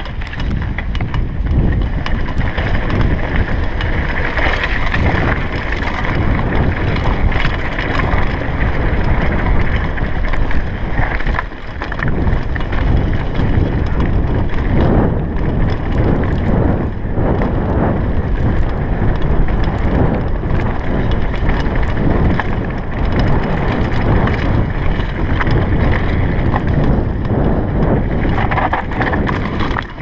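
A Commencal Supreme DH downhill mountain bike rattling and clattering as it runs over a rocky gravel trail, with many small knocks from the tyres and bike hitting stones. Wind noise on the microphone runs throughout, with a brief drop about eleven seconds in.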